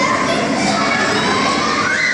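Children shouting over the steady din of many voices in an indoor play hall, with one shout rising in pitch near the end.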